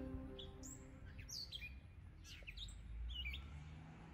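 Birds chirping in a scattered run of short, quick notes that sweep up and down. Soft music fades out in the first half second, over a low rumble.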